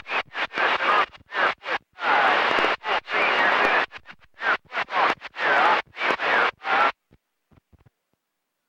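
CB radio static with a faint, garbled voice from a weak distant skip signal buried in it, chopping in and out in short bursts. It cuts off about seven seconds in.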